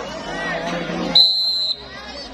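Referee's whistle, one short steady high blast of about half a second, signalling the serve. It comes just over a second in, after crowd voices.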